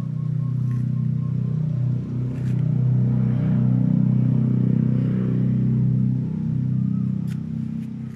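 A low, steady engine-like hum that swells in the middle and eases near the end, with a few faint clicks.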